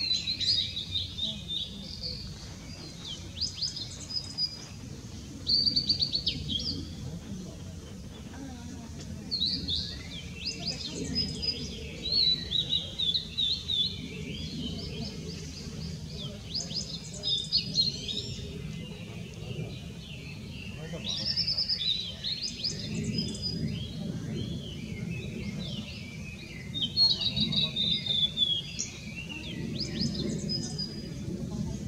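Male blue-and-white flycatcher singing: high, varied song phrases repeated every few seconds, with short pauses between them. A steady low rumble of background noise runs underneath.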